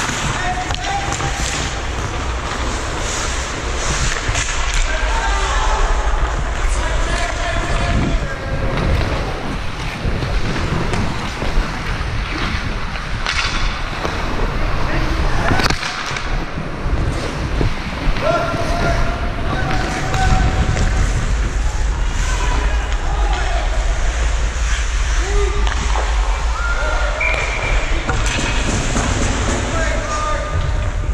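Wind rushing over a helmet-worn camera's microphone and skate blades carving the ice as a hockey player skates, with distant shouting from other players and a few sharp knocks near the middle.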